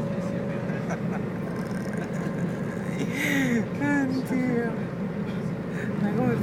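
Steady low drone of a coach's engine and road noise heard inside the passenger cabin, with a faint steady hum throughout.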